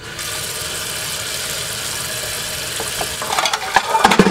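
Kitchen faucet turned on: its stream runs steadily onto dishes in a stainless steel sink. In the last second, plates and pans clink and knock as they are handled under the water.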